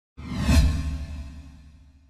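A whoosh sound effect with a deep low boom. It swells suddenly to a peak about half a second in, then fades away over a second and a half.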